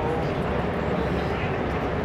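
Outdoor urban ambience: a steady low rumble with indistinct voices in the background.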